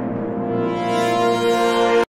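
Channel intro music: a long held chord that grows louder and then cuts off suddenly at the end.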